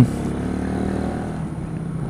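Kymco K-Pipe 125's single-cylinder engine running steadily while riding, heard through a microphone inside the rider's helmet.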